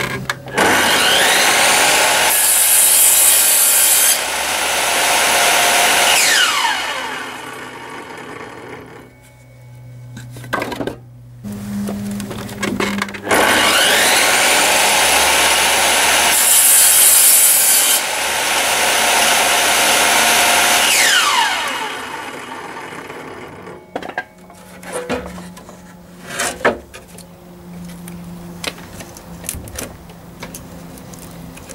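Table saw switched on and running up to speed, its circular blade cutting through an old wooden board with a harsh rasping hiss, then switched off and winding down; this happens twice. A few knocks of timber being handled follow near the end.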